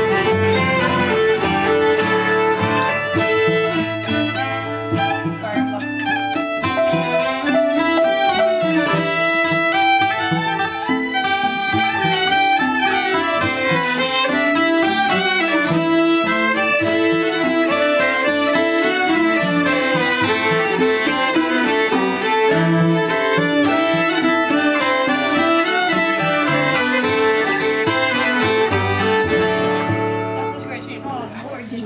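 A folk tune played live by a small string group: two fiddles, two cellos and a strummed steel-string acoustic guitar. The tune ends near the close.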